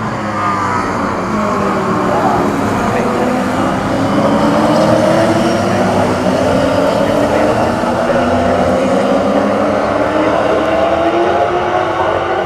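V8 Supercar racing cars' V8 engines running at race speed. Their pitch sinks early on, then climbs steadily through the gears as the cars accelerate away.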